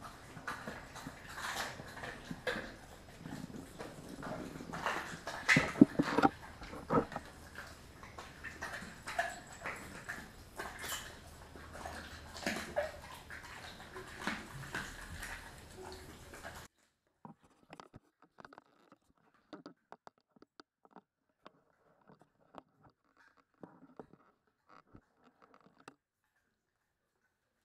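Kelpie mix dog chewing raw beef tail, a run of wet bites and sharp cracks of bone, the loudest about six seconds in. About two-thirds of the way through the background hiss drops away and only sparse, quieter chewing clicks remain.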